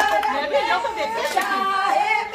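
Many women's voices overlapping in lively chatter, with a few hand claps.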